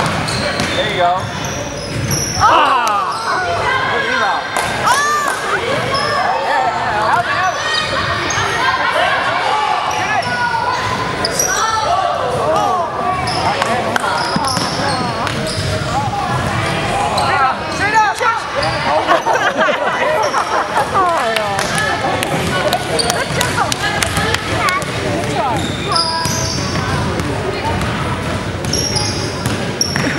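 A basketball bouncing on a hardwood gym floor during a youth game, with scattered knocks and many short pitched squeaks and calls from the players. It echoes in the large hall.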